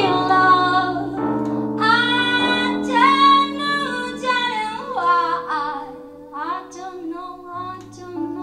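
Female jazz vocalist singing long, drawn-out notes that bend and waver in pitch, over sustained accompaniment chords. Loudest in the first half, growing softer toward the end.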